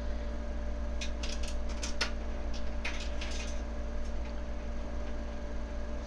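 Steady low electrical hum in the recording, with a few faint short clicks about one second and three seconds in.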